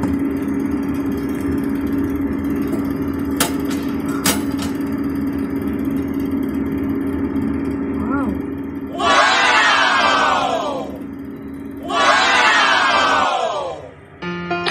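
Countertop electric oven running with a steady hum, with two sharp clicks a few seconds in. Near the end, two loud bursts of a crowd exclaiming, each falling in pitch, like a crowd 'wow' sound effect.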